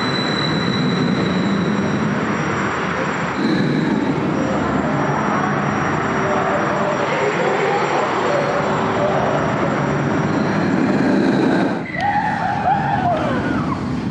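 Gerstlauer Infinity Coaster train running along its steel track: a loud, continuous rush of wheel and track noise. Near the end, people's voices rise and fall over it.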